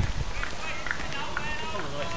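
Faint voices in the background with irregular low thumps from people walking on a paved path.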